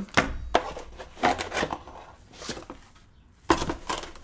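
A cardboard graphics-card box being handled and its flaps opened: a run of scrapes, taps and rustles, with a louder knock about three and a half seconds in.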